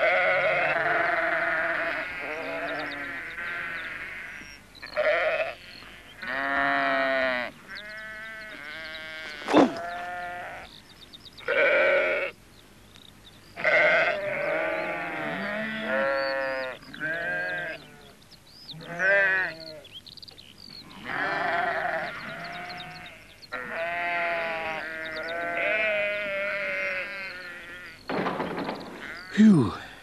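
Sheep bleating over and over: wavering calls a second or two long, one after another with short gaps, from a flock being driven back out of a field. A single sharp click comes about ten seconds in.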